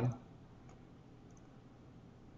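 Faint computer mouse clicks, a few small ticks over quiet room tone.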